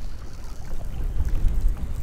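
Wind buffeting the microphone over choppy open water, a steady low rumble with faint water wash behind it.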